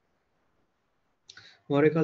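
Near silence, then a short click about a second and a quarter in, from a computer mouse. A man's voice starts speaking just before the end.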